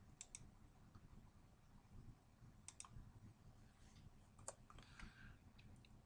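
A few faint computer mouse clicks, several in close pairs, spaced a second or two apart over near silence, as points of a spline are placed in a CAD sketch.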